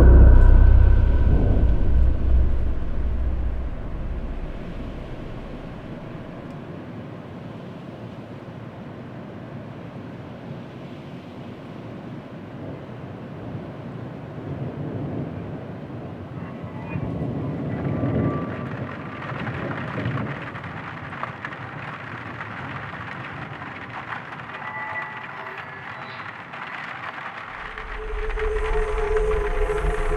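Dark ambient horror soundtrack: a loud, deep low rumble at the start that fades over a few seconds into a steady rain-like hiss, which swells briefly in the middle. Near the end a low drone and held synth tones come in.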